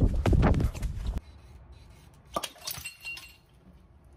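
A loud crash of something breaking, a dense clatter of impacts lasting about a second, followed by a few faint clicks.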